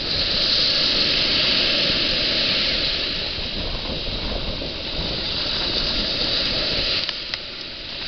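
Ocean surf washing up on a sandy beach: a steady hiss of small breaking waves, loudest in the first few seconds and easing off near the end.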